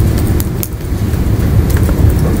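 Steady low rumble of classroom room noise, with a few faint short ticks from a marker on the whiteboard.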